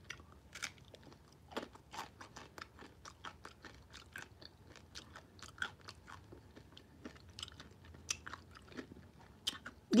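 A person chewing a crunchy chip scooped with thick dip, close to the microphone: faint, irregular crunches and mouth clicks.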